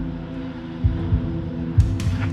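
Background film-score music: a sustained low drone with a few deep drum beats.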